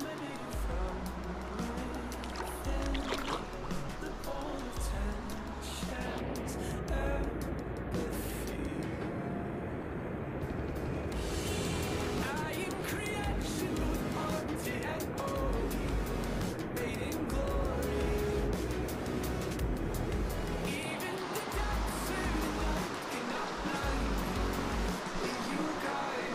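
Background music: a song with a steady bass line and a singing voice.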